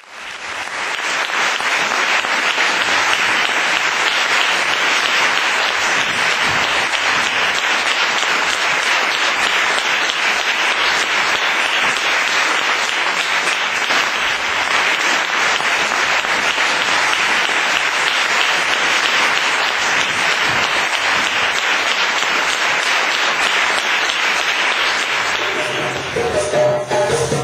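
Audience applauding: clapping that swells up quickly at the start and then holds steady.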